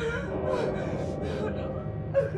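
A person gasping and panting in fright, a run of sharp breathy gasps, over a low, steady scary-music drone.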